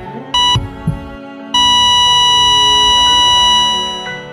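A heart monitor beeps once, then sounds one long steady flatline tone from about a second and a half in that fades near the end, the sign that the heart has stopped. Under it are soft sustained music and a few low heartbeat thumps that die out within the first second.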